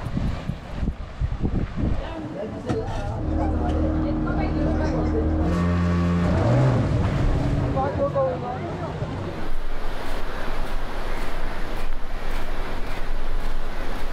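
A motorboat engine running steadily, its pitch rising briefly about halfway through, under the chatter of a beach crowd. After that it gives way to a loud, even rush of surf and wind.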